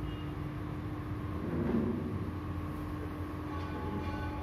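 Steady low rumble and hum of room noise in a hall, with one constant hum tone. About halfway through there is a brief, slightly louder low sound.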